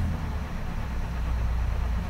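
Steady low rumble of background room noise, with no distinct events.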